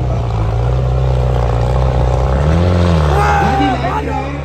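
Diesel tractor engine running hard under heavy load as it drags a disc harrow through soil, a steady low drone whose pitch rises briefly and falls back about two and a half seconds in.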